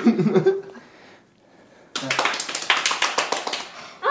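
A laugh, then halfway through a small group of people clapping their hands for under two seconds.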